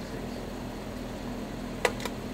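Steady low mechanical hum of shop ventilation, with one short click near the end.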